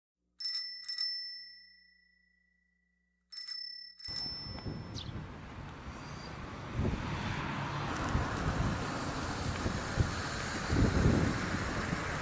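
A small bright bell rung in two quick double dings, the rings dying away between them. From about four seconds in, a steady din of road traffic with low rumble takes over.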